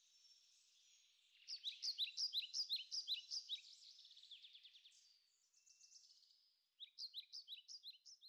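A bird singing faintly: a rapid run of quick, repeated, high down-slurred chirps lasting about two seconds, softer notes after it, then another quick run near the end.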